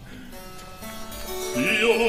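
Harpsichord continuo sounding a chord under opera recitative, after the orchestra has died away; a man's voice starts singing the recitative near the end.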